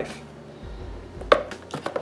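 Quiet handling of a cardboard product box and a card on a countertop, with one short knock about a second and a half in and a few faint taps near the end.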